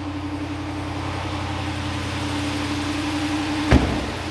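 6.4-litre Hemi V8 of a Ram 2500 pickup idling steadily just after starting. Near the end comes one loud thump, a door of the truck shutting.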